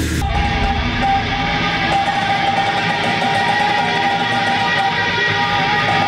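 Heavy metal music: distorted electric guitars playing a dense, sustained wall of sound, with one high note held throughout.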